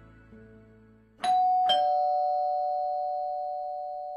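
Two-tone ding-dong doorbell: a higher chime about a second in, then a lower one half a second later, both ringing on and slowly fading.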